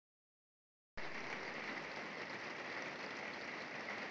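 Steady rain falling on a tiled roof and gutter, starting suddenly about a second in after silence.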